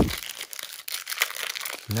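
Shiny foil wrapper of a trading-card pack crinkling and crackling in quick irregular clicks as it is handled and torn open by hand.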